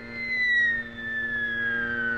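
Cartoon whistle sound effect: one long high whistle that slides slowly downward in pitch over a steady low held note, following the flight of a thrown block through the air.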